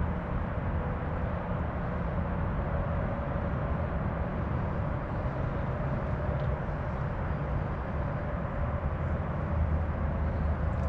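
Steady outdoor background noise: a low rumble with a faint steady hum, even throughout with no distinct events.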